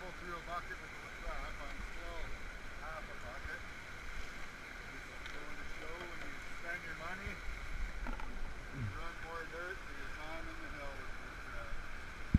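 River water running steadily over rocks, with faint, indistinct talking throughout.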